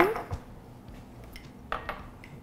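A glass of coffee over ice handled on a countertop: a soft knock as it is slid across and set down, then a brief faint clink near the end as it is picked up.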